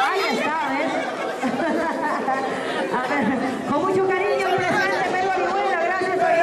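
Many voices talking over one another: loud party chatter, with no single speaker standing out.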